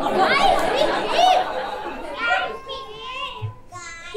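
Several children's voices shouting over one another, high-pitched and loudest in the first two seconds, then dying down to one or two voices.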